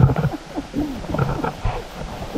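Hikers' voices, indistinct short utterances rising and falling in pitch, over the crunch of boots and trekking poles in snow and a low, uneven rumble; loudest right at the start.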